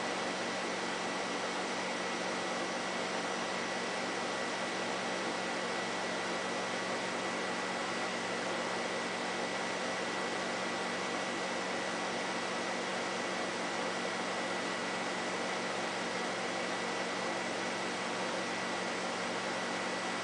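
Steady hiss with a faint, thin high tone held at one pitch and no sudden sounds.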